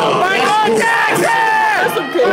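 Voices shouting and chanting over microphones, keeping up a chant of "do it", with one long drawn-out yell about a second in.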